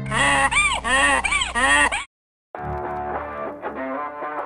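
A donkey braying, a sound effect of about four rising-and-falling honking calls lasting two seconds. After a short gap, background music starts about two and a half seconds in.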